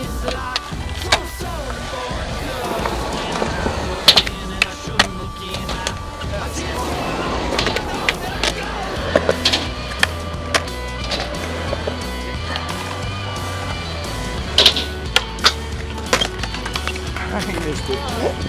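Skateboard rolling on concrete, with sharp cracks of the board being popped into tricks and landing, heard about a dozen times, over background music.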